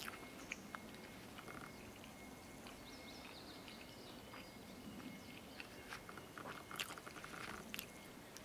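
Soft, quiet chewing of a tender soy-glazed chicken steak with the mouth closed, with small wet mouth clicks. Faint bird chirps in the background.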